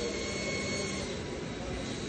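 Steady industrial machinery noise from a large die-casting machine cell for single-piece castings: a continuous hum and hiss with no distinct strokes.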